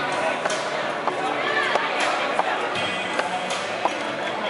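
Voices and music in the background, with irregular sharp knocks from the tips of wooden stilts striking pavement as a man walks on them.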